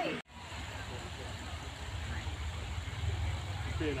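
A low, steady rumble of wind buffeting the microphone outdoors, starting after a brief dropout in the sound just after the start.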